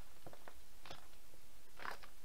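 Loose wires of a car wiring harness being handled and pulled apart on a wooden workbench: light rustling with about four short clicks, the loudest near the end.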